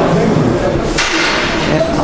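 A short, sudden whoosh about a second in that fades quickly, over a background voice holding pitched notes.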